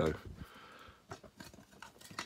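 A few faint, light clicks from handling the plastic case of a K2 EMF meter and a wired piezo disc.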